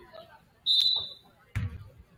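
A referee's whistle blown once in a short, loud, shrill blast, followed about a second later by a basketball bouncing once on the hardwood gym floor.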